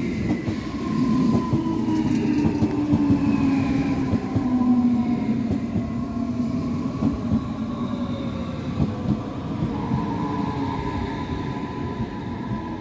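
DB class 423 S-Bahn electric multiple unit pulling into the station and braking. The traction motors' whine falls slowly in pitch over wheel-on-rail rumble and clicks, and a steadier higher tone sets in near the end as the train nears a stop.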